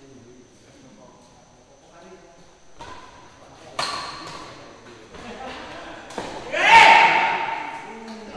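Badminton rackets striking a shuttlecock during a doubles rally: a sharp hit about four seconds in and a few more after it. Then a loud shout near seven seconds in, the loudest sound, as the rally ends.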